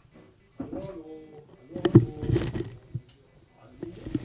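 A man's voice shouting from behind two closed sliding wooden doors, muffled and dulled by them, in two stretches. The partition damps the voice but does not silence it.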